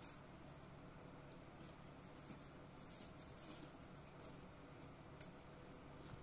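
Faint chewing of a crisp lemon ginger snap cookie, with a few soft crunches and one sharper crackle about five seconds in, over quiet room tone.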